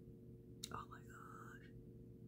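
A woman's brief whisper or breathy vocal sound, opening with a small mouth click about half a second in and lasting about a second, over a faint steady hum.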